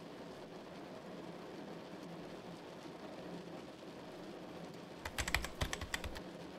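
Fast computer-keyboard typing for about a second near the end, a quick run of clicks over a faint, steady rain-like hiss.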